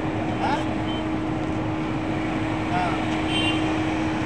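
Outdoor background of a few indistinct voices over a steady rushing noise and a constant low hum.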